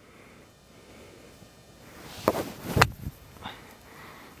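A 60-degree wedge swung in a three-quarter knockdown pitch shot, striking the golf ball off the turf: two short, sharp sounds about half a second apart a little past halfway, over a faint outdoor hush.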